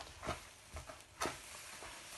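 Thin plastic flower pot being squeezed and pressed by gloved hands to loosen a root-bound monstera's root ball, giving a few short crackles and rustles, the sharpest a little past halfway.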